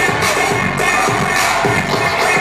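Live pop music with a steady beat, about two beats a second, played loud over a concert PA, with a crowd cheering over it.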